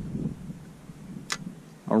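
A single sharp click about halfway through from the fishing rod and spinning reel being handled, over faint wind and water noise.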